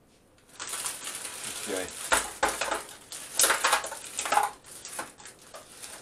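Frozen roast potatoes poured from a plastic bag into a metal roasting tray. The bag crinkles and the potatoes knock and clatter against the tray in a run of irregular clicks, starting about half a second in.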